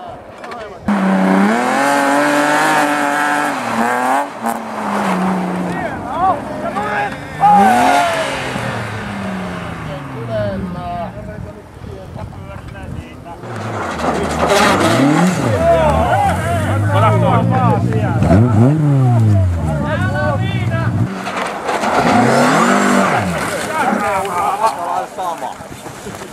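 Rally car engines revving hard, their pitch sweeping up and down several times as cars pass on a snow stage, busiest in the second half, with shouting voices.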